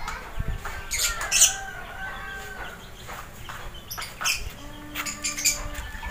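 Birds chirping: many short calls throughout, with a few sharp clicks.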